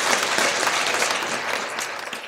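Audience applauding: many hands clapping at once in a steady, dense patter.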